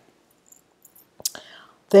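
A pause in a woman's talk: faint quiet for about a second, then a sharp mouth click and a soft breathy intake before she starts speaking again at the very end.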